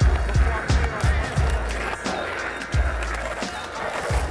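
Hip-hop beat with deep, regularly spaced bass kicks, mixed with the sound of a skateboard rolling on asphalt.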